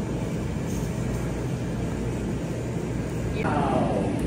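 Steady low background rumble and hum with no distinct events, then a brief voice near the end.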